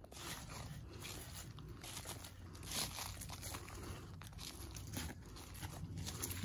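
Footsteps crunching through dry fallen leaves on the woodland floor, faint and irregular.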